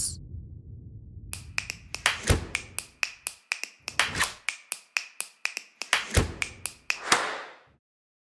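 A quick, irregular run of sharp clicks or taps, about four a second, starting about a second in and stopping just before the end.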